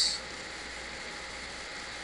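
Steady low hiss and hum of background noise with no distinct events.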